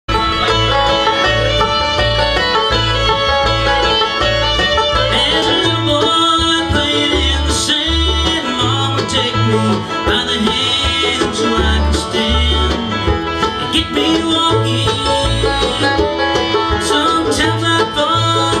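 Live bluegrass band playing: banjo, fiddle, mandolin, two acoustic guitars and upright bass, with the bass keeping a steady beat underneath.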